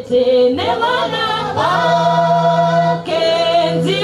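A cappella voices singing a gospel song in harmony, holding long notes in phrases, with a low part sustained underneath.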